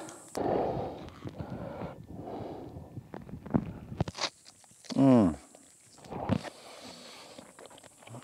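A man eating, with a single drawn-out, falling "mmm" of pleasure about five seconds in and softer mouth and breathing sounds around it.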